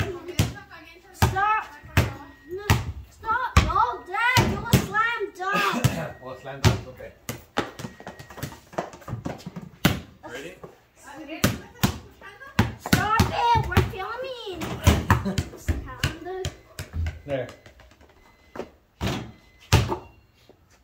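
Basketball bouncing on a concrete patio: many sharp bounces, irregularly spaced, between stretches of voices.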